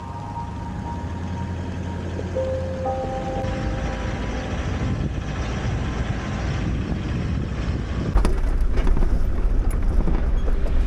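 4x4 driving noise with wind on the roof-mounted camera's microphone: a low rumble under a rushing hiss that grows louder, turning rougher with knocks and jolts after about eight seconds. A few held musical notes sound over it at the start.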